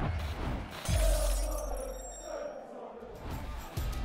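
Intro music with sound effects: a deep boom about a second in, then high ringing effects that fade, and music with a steady beat starting near the end.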